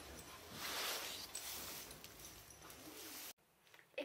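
Soft rustling noise in a pony's stable stall. It stops abruptly about three and a half seconds in.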